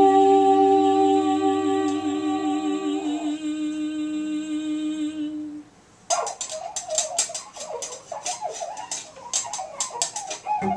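Free-improvised trumpet, bowed double bass and wordless voice: held trumpet tones and a hummed vocal line with vibrato over a low bass drone, thinning out and fading a little past halfway. After a brief pause comes a fast stream of clicks and pops under a wavering mid-pitched line.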